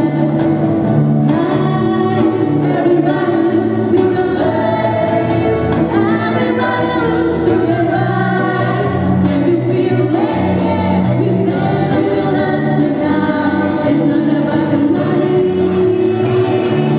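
A woman singing lead through a microphone over a live band with guitars and hand drum, sustained melodic phrases over a steady accompaniment.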